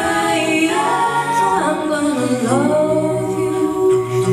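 A cappella group singing: a female lead voice over backing voices and a low sung bass line, with held notes that slide to new pitches partway through.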